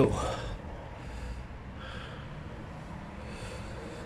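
A man breathing audibly close to the microphone, a few soft puffs of breath over a low background rumble.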